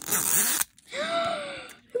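Plastic sealing strip ripped off a Miniverse capsule ball in one quick tear lasting about half a second, the seal finally coming free after sticking. A drawn-out pitched, sliding squeak follows for about a second.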